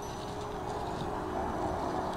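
Steady outdoor background noise, a low rumble with no distinct event.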